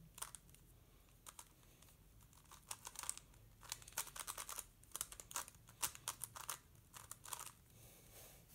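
Plastic twisty puzzle being turned fast by hand: quick runs of light clicking and clacking as its layers snap round, sparse at first and in dense flurries from about three seconds in.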